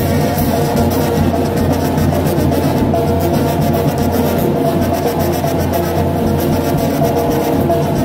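A Mexican brass banda playing: held brass notes over a steady low tuba line, with percussion keeping the beat.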